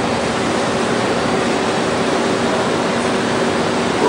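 Steady hiss with a faint low hum running under it.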